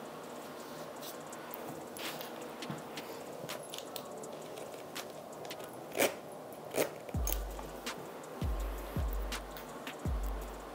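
Quiet handling sounds of a zip-front platform sandal being put on: soft rustling and a few sharp clicks from the zipper and the sandal. Background music with deep bass notes comes in about seven seconds in.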